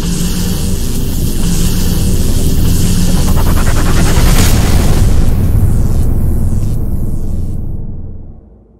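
Cinematic logo-reveal sound effect: a loud low rumble and drone under a high hissing layer, swelling to a sharp hit about four and a half seconds in, then fading out near the end.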